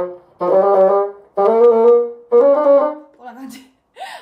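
Bassoon playing a series of short phrases of quick notes, each landing on a held note, with brief gaps between. This is a fast run practised in segments, each segment played through to the first note of the next beat.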